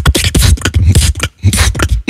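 A beatboxer performing a fast battle routine of vocal drum sounds into a microphone, deep bass kicks mixed with sharp hissing hits, with a short break a little past halfway.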